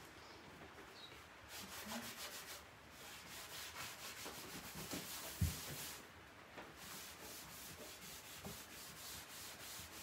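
A cloth rag rubbing back and forth over a solid oak tabletop, wiping back wet gel stain along the grain: faint, repeated swishing strokes. A single soft knock about five and a half seconds in.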